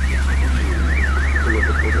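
An electronic alarm siren wailing up and down in pitch, about three sweeps a second, over the steady low drone of the vehicle's engine heard from inside the cabin.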